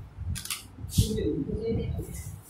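Quiet voices of people in the hall, with two short hisses about half a second and a second in.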